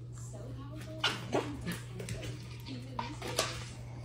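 A puppy giving short high barks, two about a second in and two softer ones around three seconds in, with whining between them.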